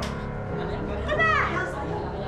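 A woman's loud shout or cry about a second in, over sustained dramatic background music.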